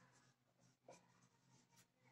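Faint strokes of a marker pen writing on a whiteboard: a few short scratches, the clearest about a second in.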